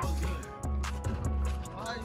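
Background music with deep, pulsing bass notes, sharp percussive clicks and a vocal line.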